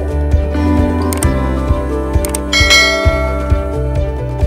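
Instrumental background music with a steady beat. A couple of sharp clicks come, then a bright bell chime a little past halfway, the sound effects of an animated YouTube subscribe button and notification bell.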